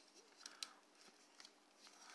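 Near silence with a few faint clicks as the plastic joints of a Playmates Kong action figure's arms are rotated by hand.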